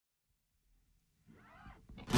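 Near silence as the recording fades in, with a faint, short sound of sliding pitch near the end.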